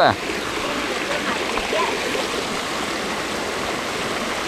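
Shallow river running over rocks: a steady rush of flowing water.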